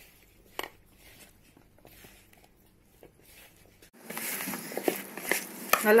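Hands mixing cauliflower florets into a thick rice-flour, gram-flour and spice coating in a bowl. The first seconds are faint, with one sharp click. About four seconds in, a louder, rougher mixing noise with small clicks comes in.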